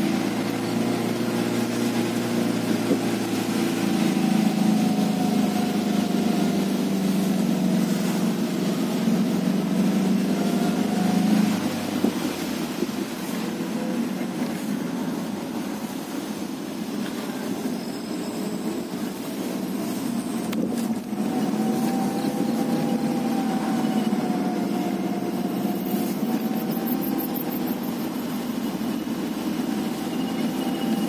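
Car engine running while driving, heard from inside the cabin, its pitch drifting slowly up and down with road speed. About twelve seconds in the deepest part of the engine sound drops away and it gets a little quieter, as if easing off the throttle; a brief click comes a few seconds before the end of the second third.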